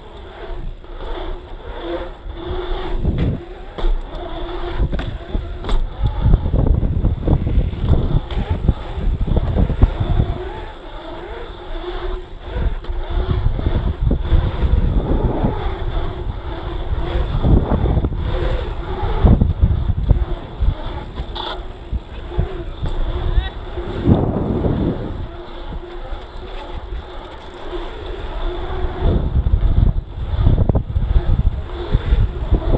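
Wind buffeting the microphone of an action camera on a mountain bike riding an asphalt pump track, rising and falling in surges every few seconds as the bike pumps through the rollers, over a low rumble.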